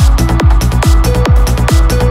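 Melodic progressive psytrance at 140 bpm: a kick drum falling in pitch on every beat, a rolling bassline between the kicks, and held synth notes above.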